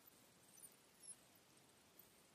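Near silence: faint room tone with a few faint, short high ticks.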